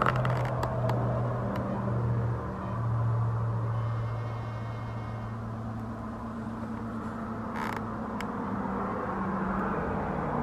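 A steady low mechanical hum with a small shift in pitch about two and a half seconds in, under soft rustling and a few light clicks as a flannel shirt is adjusted on a cat.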